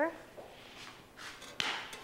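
Faint hiss of salt being sprinkled over mashed black beans in a pan, then a sharp click a little before the end.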